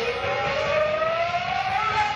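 Live rock band playing, with one sustained note gliding steadily upward over about two seconds, like a siren.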